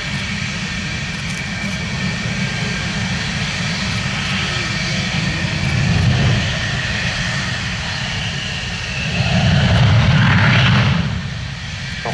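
Dassault Rafale M fighters taxiing, their twin Snecma M88 turbofans running at low power: a steady low rumble with a thin high whine. It swells louder about nine seconds in, then eases off near the end.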